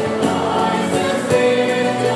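Women's voices singing a contemporary church psalm setting in harmony, accompanied by a band of piano, bass, guitar and drums.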